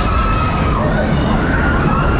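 Loud fairground music from a waltzer ride's sound system: a wailing siren-like tone rising and falling over heavy bass.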